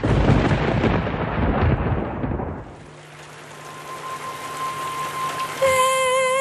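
A loud thunder-like rumble played over the arena's sound system, dying away after about two and a half seconds. A rising hiss with a steady high tone follows, and near the end a woman's voice comes in singing a long, wavering held note.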